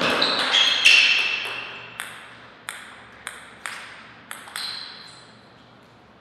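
Sharp clicks of a table tennis ball: two loud hits in the first second, then a series of fainter, irregularly spaced bounces that die away over the next few seconds, each with a short ringing echo.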